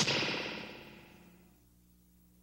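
A sudden hit that ends a cartoon soundtrack, its echoing ring fading away over about a second and a half and leaving a faint steady hum.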